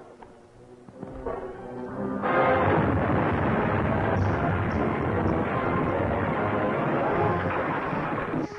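A film-soundtrack explosion: after a quiet first second and music building, a loud blast sets in suddenly about two seconds in and its noise holds for about six seconds, with music running through it.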